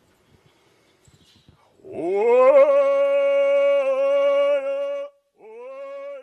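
A singer's voice opening a Stó:lō song: about two seconds in, a long call scoops up in pitch and is held for about three seconds. A second held call begins just before the end, with no drum yet.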